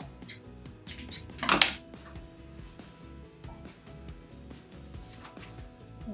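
Soft background music, with a few light clicks of metal tools and one short, sharp snip about a second and a half in: steel scissors cutting a length of hemp cord.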